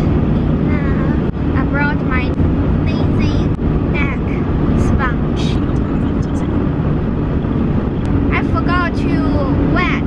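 Steady low road and engine rumble inside the cabin of a moving car, with a constant hum.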